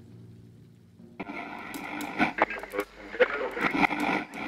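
A low drum note dies away. About a second in, a small radio cuts in with a voice and crackle from its speaker.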